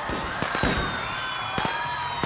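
A rapid, irregular string of sharp pops and cracks, with faint high whistling tones slowly falling in pitch behind them.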